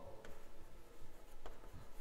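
Chalk writing on a blackboard: short scratching strokes with a few sharp taps of the chalk against the board.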